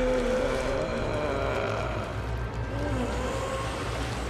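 Horror film sound design: a continuous deep rumble and noise, with a wavering tone above it that bends up and down.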